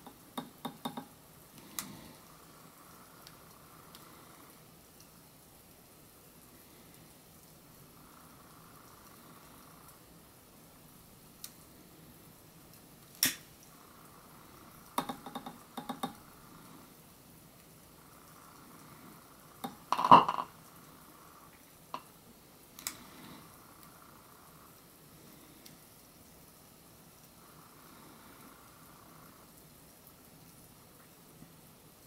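Hydrogen gas bubbling off calcium metal in water, popping as a lighter flame ignites it: scattered sharp pops and small bangs, the loudest about twenty seconds in, with a cluster of quick pops around fifteen to sixteen seconds.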